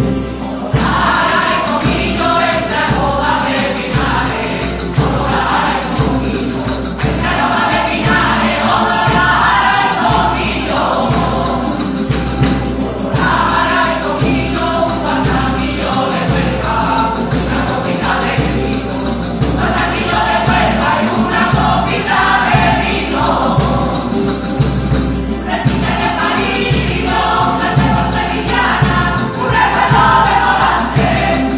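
A rociero choir of mixed voices singing a song in phrases, accompanied by Spanish guitar and percussion keeping an even beat.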